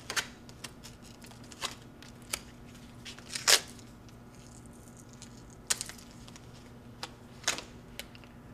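Adhesive test tape being unrolled from its roll in short rips, with a few brief crackling bursts and handling noises, the loudest about three and a half seconds in.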